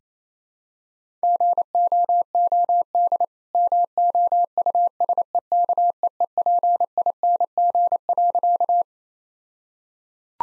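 Morse code sent at 28 words per minute: a single steady tone keyed into rapid dots and dashes spelling the punchline "GOOD MOUSEKEEPING", with a word gap after "GOOD". It starts about a second in and stops near the end.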